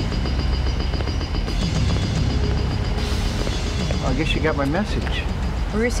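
Soundtrack music with a steady low rumble and faint held high tones. A voice comes in briefly about four seconds in, and speech starts again at the very end.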